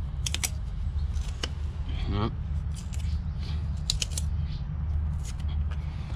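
Old hubcap gasket being peeled off a trailer wheel hub by hand, giving a few short scattered snaps and crackles, over a steady low rumble.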